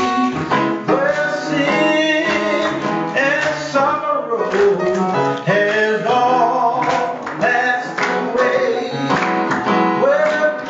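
A gospel song sung by a man leading at the microphone, with the congregation joining in over instrumental accompaniment.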